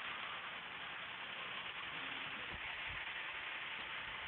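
Steady outdoor street background noise, an even hiss, with a couple of brief low bumps about two and a half seconds in.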